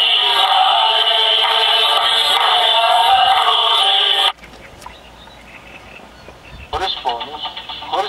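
Broadcast TV sound playing from a portable digital TV receiver during a channel scan: a loud stretch of music with voice that cuts off suddenly about four seconds in as the tuner moves on. After a quieter lull, a man starts speaking from the next channel near the end.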